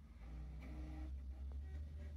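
Desktop computer (Dell Optiplex 990) starting up: a low, steady machine hum from its fans and drives comes in just after the start and grows louder, with a faint click about one and a half seconds in.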